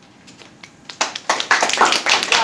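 Audience clapping, starting about a second in and quickly filling out into dense, steady applause.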